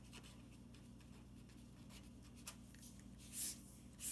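Felt-tip marker writing on paper: faint short pen strokes, then a longer, louder stroke near the end as a line is drawn to box the answer.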